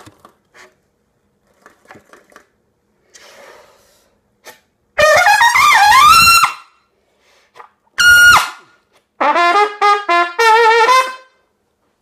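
A Tromba plastic B-flat trumpet played through a Patrick PBC mouthpiece. After a few seconds of faint handling clicks, it plays a rising slurred phrase, then a single short note that bends down at its end, then a quick run of short notes stepping up and down.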